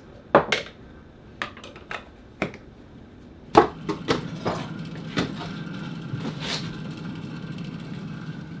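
Kitchen handling sounds: sharp clicks and knocks of a plastic blender jar and food containers as pesto is scraped out and packed away. About three and a half seconds in the freezer door is opened with a loud knock, and a steady low hum runs on under more knocks of containers being put in.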